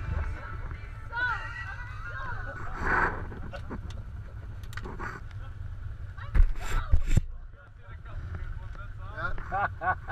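Side-by-side UTV engines running low and steady while people laugh and call out. A cluster of loud knocks and bumps close to the microphone comes about six to seven seconds in.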